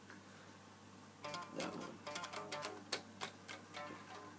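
Guitar being picked: a quick run of plucked notes starting about a second in.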